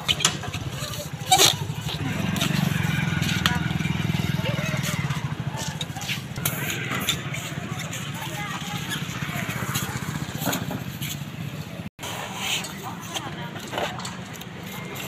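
A vehicle engine running close by with a low, steady chug, loudest a few seconds in and then easing off slightly, with indistinct voices around it.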